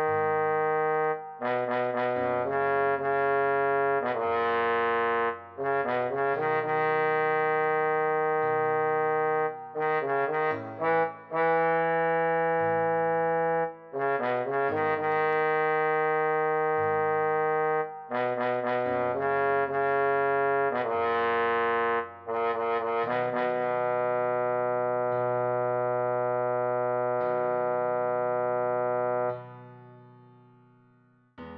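A trombone plays a melody line of short phrases and tied, held notes over a backing track. The last phrase ends on one long held note that fades out near the end.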